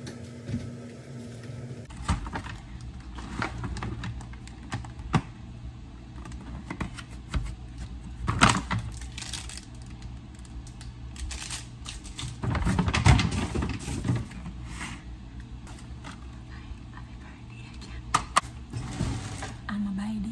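Handling noises: plastic packaging crinkling and rustling, with scattered clicks and knocks, a sharper knock about eight seconds in and a longer stretch of rustling about thirteen seconds in.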